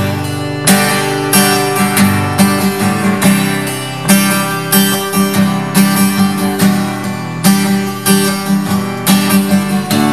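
Acoustic guitar strummed in a steady rhythm, an instrumental passage of a song.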